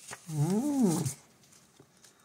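A person's short closed-mouth hum, under a second long, its pitch rising then falling like an interested "mmm". It follows a brief rustle of a large comic book's paper page being turned.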